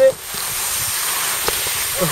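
Steady hiss of skis sliding over snow.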